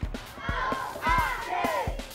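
A group of children's voices shouting together, several overlapping yells rising and falling in pitch, over background music with a low beat.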